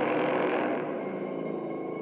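Soundtrack of an animated horror cartoon: a steady drone of several held tones that eases slightly in level.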